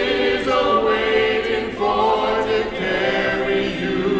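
Mixed choir of men and women singing long held chords, the voices moving between notes in a large church.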